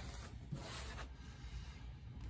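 Faint rubbing and rustling of paper being handled, loudest briefly about half a second in.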